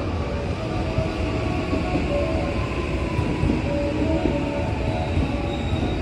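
JR West 207 series 1000-subseries electric train running into the platform and braking: a steady rumble of wheels on the rails, with a thin motor whine falling slowly in pitch as it slows.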